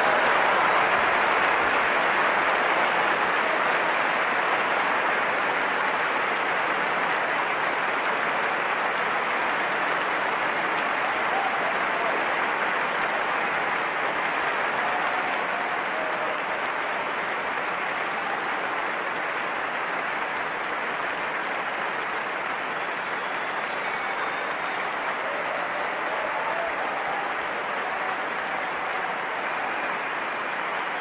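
A large audience applauding steadily, the clapping loudest at first and slowly easing off.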